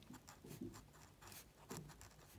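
Faint scratching of a ballpoint pen writing on paper.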